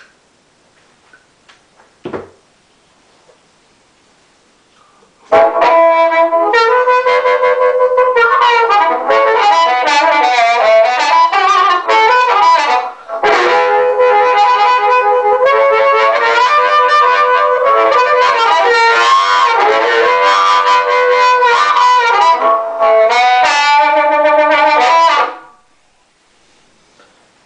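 Blues harmonica cupped with a Shure Green Bullet microphone and played through a small amplifier, a noise gate in the chain: an amplified riff with no feedback howl, broken briefly in the middle. Before the playing starts about five seconds in, there is a quiet stretch with a single click.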